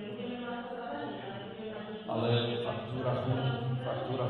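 A man speaking at length in a steady, level voice, louder from about halfway through.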